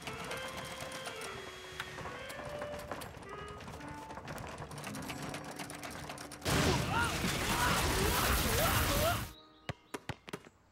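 Cartoon soundtrack: a light melody of held notes with scattered clicks, then, about six and a half seconds in, a much louder rushing noise with a wavering squeal over it that lasts nearly three seconds and cuts off suddenly. A few sharp knocks follow near the end.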